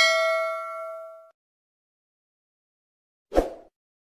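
Bell-ding sound effect of a subscribe-button animation, ringing and fading out just over a second in. After a pause, a brief dull hit comes about three and a half seconds in.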